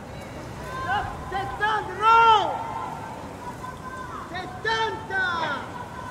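Distant voices calling out in short shouts that rise and fall in pitch, several in the first half and a few more near the end, the loudest about two seconds in, over a steady outdoor background.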